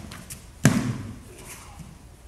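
A single sharp impact with a low thud beneath it, about two-thirds of a second in, from aikido practitioners moving on the training mat. A few faint ticks come before it.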